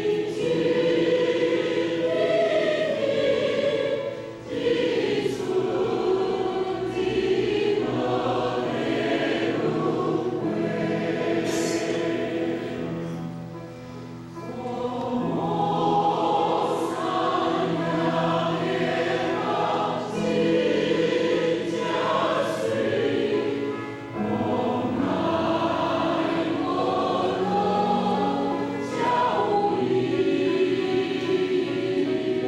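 Mixed choir of men and women singing a choral song in parts, in long held phrases with short breaks between them; the singing grows softer for a moment about thirteen seconds in, then swells again.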